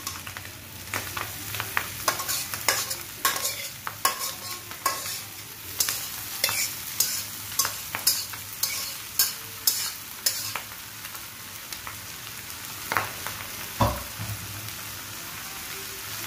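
Bottle gourd greens frying in hot oil in a frying pan, with a steady sizzle. Over about the first ten seconds, repeated sharp clicks and scrapes of a utensil against the bowl and pan come as the greens are pushed in, followed by two more knocks near the end.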